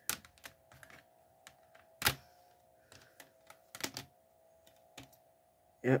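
Plastic CD jewel cases being handled: a few sharp clicks and taps, the loudest about two seconds in, over a faint steady hum.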